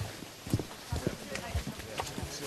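Footsteps of two people walking along a forest path: a string of short, dull thuds, several a second, at an uneven pace.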